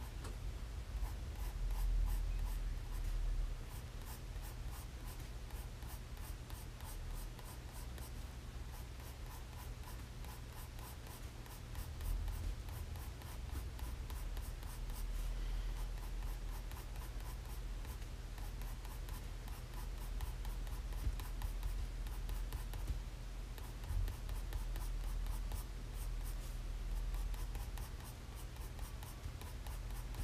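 Graphite pencil hatching on sketchbook paper: rapid, closely repeated short scratchy strokes as curved shading lines are laid down with a pencil going dull, over a steady low hum.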